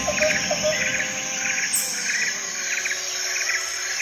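Insects chirping in short clusters, about two a second, over a steady high-pitched buzz.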